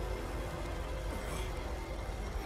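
Background music from an animated episode's soundtrack, over a steady low rumble.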